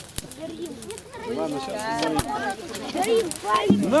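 Overlapping chatter of several people talking at once, mostly high voices of women and children, with a couple of sharp clicks.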